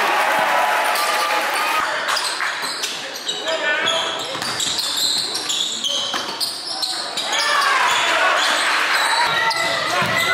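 Live basketball game sound echoing in a gym: the ball bouncing on the hardwood court, with voices of players and spectators.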